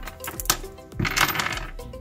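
Loose metal bolts, nuts and washers clinking against each other and the wooden tabletop as they are sorted by hand, with sharp clinks about half a second and about a second in.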